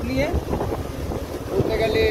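Wind buffeting the microphone of a moving motorcycle, a dense low rumble of rushing air and road noise, with a voice speaking briefly just after the start and again near the end.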